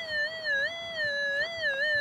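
Metal detector's audio signal: one held electronic tone that wavers slightly up and down in pitch as the search coil passes over a buried metal target.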